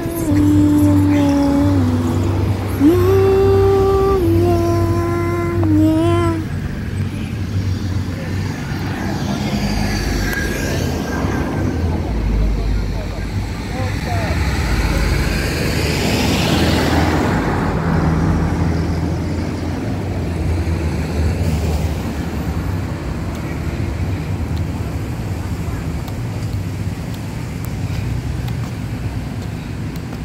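A car drives past close by: a whoosh of tyres and engine that swells in the middle and fades away, over steady traffic rumble and wind noise. In the first six seconds a voice sings a few held notes.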